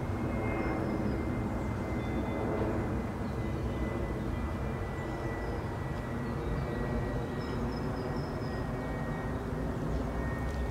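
A steady low drone of a distant engine, even in level throughout, with a thin steady high tone over it and a few faint high chirps.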